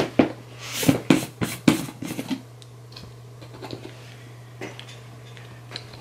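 A cluster of sharp plastic clicks and knocks in the first two seconds or so, then a few faint taps, as a plastic protein shaker cup and its lid are handled. A steady low hum runs underneath.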